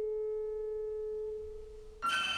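A single held piano note from the film's score ringing on and slowly dying away, fading out near the end.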